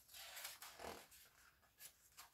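Faint rustle of a picture book's paper page being turned by hand, with a soft click near the end.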